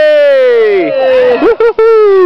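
A high voice shouting a loud cheer for a runner in a race: a long drawn-out call falling in pitch, a few short quick calls about a second and a half in, then another long falling shout.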